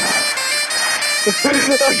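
A person plunging into river water: a splash lasting about a second at the start, under loud background music. A voice calls out "Ah" near the end.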